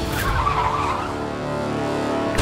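Car tyres squealing as a car brakes to a stop; the wavering squeal fades out after about a second, leaving a low hum.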